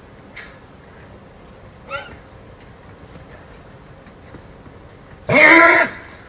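A faint short call about two seconds in, then one loud animal call lasting under a second near the end.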